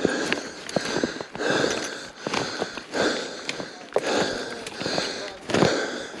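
Footsteps crunching through snow, about one step a second, with small sharp snaps of twigs underfoot.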